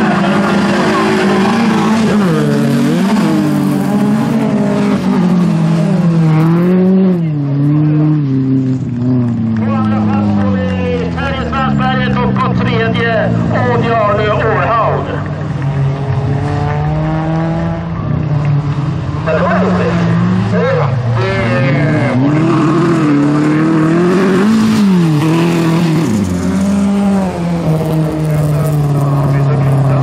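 Several bilcross race cars on track, their engines revving up and falling back again and again through the corners and gear changes.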